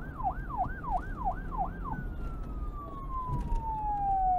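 A siren in a fast yelp, about three rising-and-falling sweeps a second. About halfway through it changes to one long, slowly falling tone, over a low rumble.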